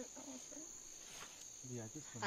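Insects trilling steadily at one high pitch, faint.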